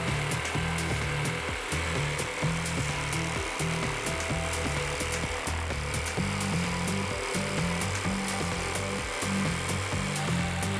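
Jigsaw mounted upside down in a table, its blade tilted to 45 degrees, running steadily as it makes a bevel cut through plywood.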